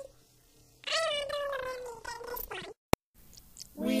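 A single high-pitched cry of about two seconds that slowly falls in pitch, then a short sharp click, with a voice starting near the end.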